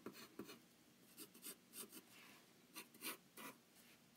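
Faint pencil strokes on drawing paper: a series of short, irregular scratches as the lead is worked over the paper.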